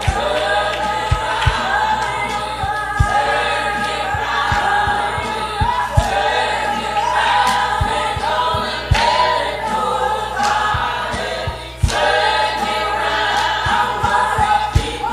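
Gospel music with a choir singing, over scattered low beats.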